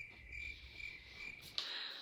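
Crickets chirping sound effect: a faint, steady, high chirping that stops shortly before the end. It is the comic cue for an awkward silence after a question goes unanswered.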